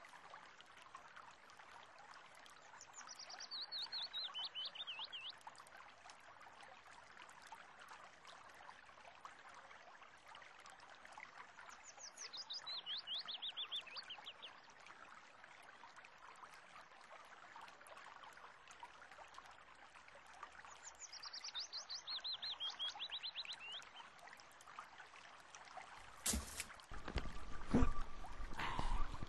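Soft water ambience with a songbird's fast descending trill heard three times, about nine seconds apart. A few sharp knocks come near the end.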